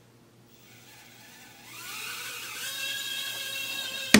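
A micro quadcopter drone's tiny motors spinning up: a faint whir that turns into a high-pitched whine, rising in pitch about two seconds in and then holding steady and getting louder.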